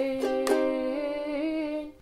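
Ukulele strummed twice, about half a second apart, on a final A minor chord, with a woman's voice holding one long sung note over it. Chord and note ring on and die away just before the end.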